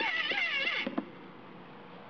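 A person laughing briefly, the laugh stopping about a second in, followed by a quiet stretch of faint room background.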